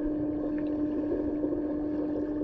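Underwater pool ambience heard through an action-camera housing: a steady low hum over a rumbling wash of water noise, with no breathing bubbles.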